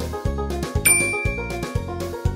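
A single bright ding sound effect, struck just under a second in and ringing for about a second, over background music with a steady beat of about two beats a second.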